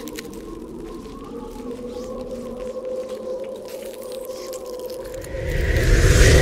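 Sustained ambient drone holding a steady, slightly wavering pitch, with faint crackles over it. About five seconds in, a whoosh with a deep rumble swells up as a transition effect.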